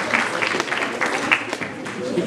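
Audience applauding, the clapping thinning out and fading toward the end.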